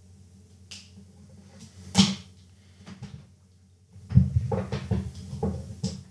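Handling noise from audio cables and a 3.5 mm jack plug: a faint click about half a second in, a sharp click about two seconds in, then about two seconds of close rubbing and knocking near the end as an arm moves right by the microphone.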